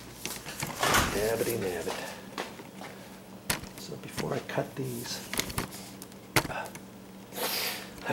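A man's voice in short, indistinct phrases, broken by a few sharp knocks or taps, over a steady low hum.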